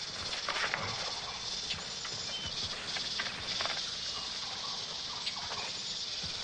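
Tropical jungle ambience: a steady high insect drone, with scattered short bird calls and small rustles.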